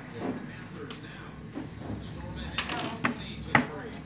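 A few sharp wooden knocks, the loudest about three and a half seconds in, as a furniture panel is pressed onto its wooden dowels and pops into place, with faint voices behind.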